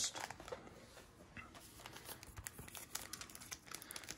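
Faint crinkling and small crackles of a trading-card pack's wrapper being handled and picked at to tear it open.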